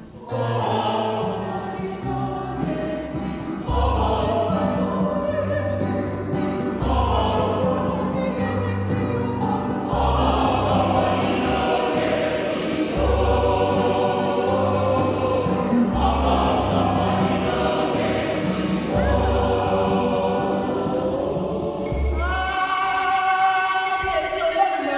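Mixed choir singing a traditional African song, many voices together, over low sustained bass notes that change every second or two. The voices come in strongly right at the start, and the bass notes drop out near the end.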